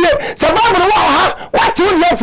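A man's loud, high-pitched, excited voice, its pitch leaping up and down in short phrases, with a brief break about halfway through.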